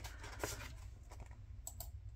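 Faint handling of a handmade paper journal: light taps and paper rustles as the card and pages are moved, with one tap about half a second in and a couple more near the end.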